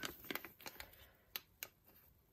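Faint handling noise from gloved hands picking up a clear plastic bag of glitter: a few light, irregular ticks and crinkles, more of them in the first second.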